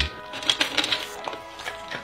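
Soft background music with steady held notes, with a few faint clicks.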